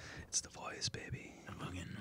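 Quiet, low speech and whispered murmuring, with a few short hissing consonants.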